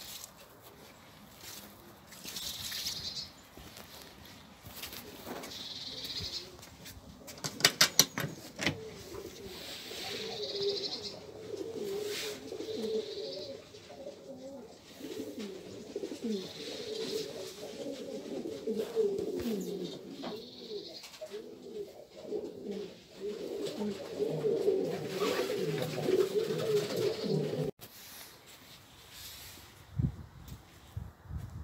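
Valenciana pouter pigeons cooing, a continuous, wavering, bubbling coo that builds about 9 s in and carries on until it cuts off shortly before the end. A quick run of sharp claps about 8 s in is typical of pigeon wings clapping, and faint high chirps of another bird recur every few seconds.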